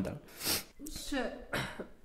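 A man clearing his throat with a short cough about half a second in and again near the end, with brief strained voice sounds in between.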